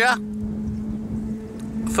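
Motorbike engine running with a steady hum, with low rumbling noise from wind on the microphone.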